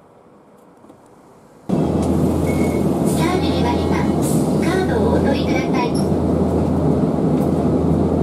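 Steady low hum inside a streetcar waiting at a stop, starting suddenly about two seconds in, with voices over it.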